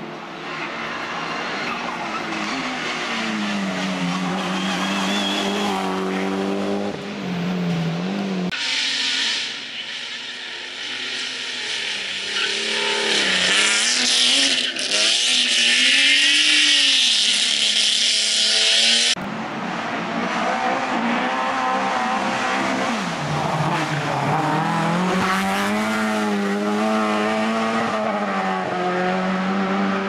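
Competition cars at full throttle on a tarmac hill climb, the engine note climbing with revs and dropping at each gear change. The sound jumps to another car at about a third and two thirds of the way through. In the middle section a car accelerates hard out of a hairpin with its tyres squealing.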